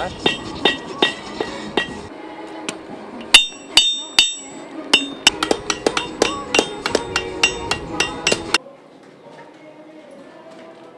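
Blacksmiths' hammers striking metal on an anvil, each blow ringing out with a metallic clang. Three heavy blows come about three to four seconds in, between runs of quick, lighter strikes at about four a second. The hammering stops suddenly near the end, leaving quiet background.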